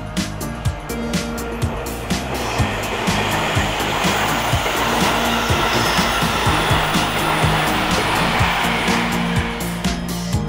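Background music with a steady beat. Under it, the rushing noise of a passing train swells up about two and a half seconds in and dies away near the end.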